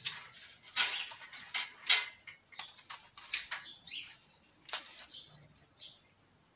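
Pruning shears snipping grapevine canes during winter pruning, a series of sharp irregular clicks with the rustle of woody canes being handled, the loudest snips a little under a second in and about two seconds in.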